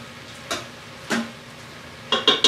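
Two light clicks a little over half a second apart: a utensil tapping against the Instant Pot's stainless steel inner pot while the cooked green beans are checked.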